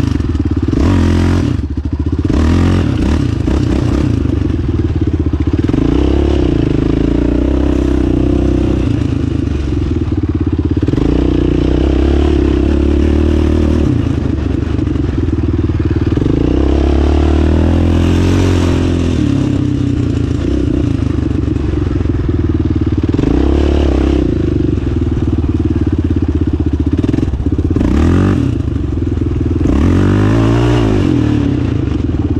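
Yamaha Raptor 700 sport quad's single-cylinder four-stroke engine running under load while being ridden on a dirt track, its revs rising and falling several times through acceleration and turns.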